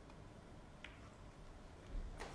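A hushed snooker arena, nearly silent, with one faint sharp click about a second in: the cue ball striking the blue.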